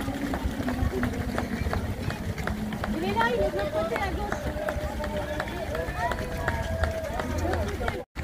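Footsteps of a large pack of marathon runners on wet asphalt, a dense stream of footfalls. Voices talk over them from about three seconds in.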